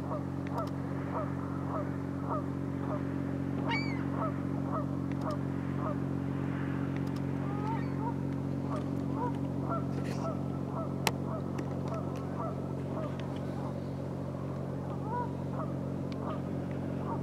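A flock of geese honking over and over, over a steady low hum from the freighter's engines. A single sharp click partway through.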